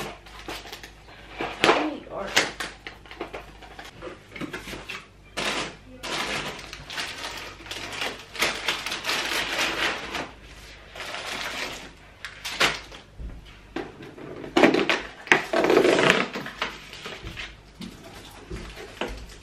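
Plastic treat bags and candy packaging crinkling and rustling as they are handled, in irregular bursts, loudest near the end.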